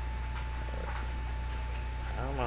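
Steady low electrical hum with hiss and a thin, steady high whine, broken by a few faint, brief clicks.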